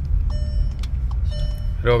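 Cabin noise of a Volkswagen Jetta being driven slowly: a steady low engine and road rumble heard from inside the car, with faint high tones twice, about a second apart.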